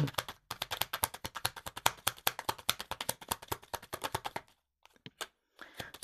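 A deck of tarot cards being shuffled by hand: a rapid, dense run of card clicks for about four seconds, then a few separate taps near the end as a card is drawn and laid on the table.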